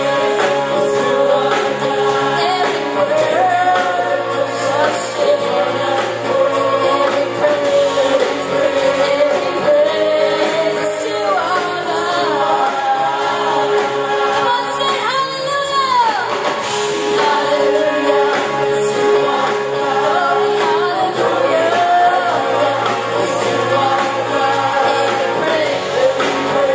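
A worship team of several singers on microphones singing a gospel praise song together over band accompaniment with a steady beat. About fifteen seconds in, a high voice swoops up and back down.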